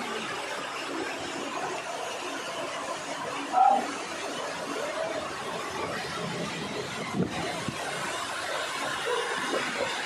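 Steady rush of a waterfall pouring over rocks into a pool. A short, loud voice-like call cuts through about three and a half seconds in.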